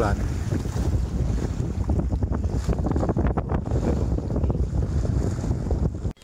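Strong wind buffeting the microphone in a steady low rumble, with choppy harbour water splashing beneath it.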